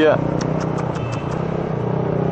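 Motorcycle engine running steadily at low road speed in traffic, an even hum with road and wind noise.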